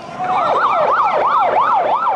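Emergency vehicle siren in a fast yelp, its pitch sweeping up and down about four times a second.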